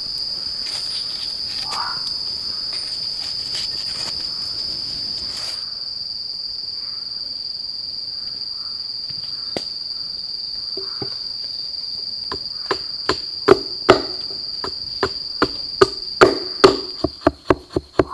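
Insects droning on one steady high pitch. In the last third a hatchet strikes wood in quick, irregular knocks, the loudest sounds here.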